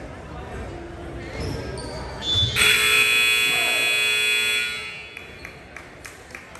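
Gym scoreboard buzzer sounding once, a steady electronic tone lasting about two seconds, starting a little before the middle and cutting off sharply. Before and after it, a murmur of players' and spectators' voices echoes in the hall.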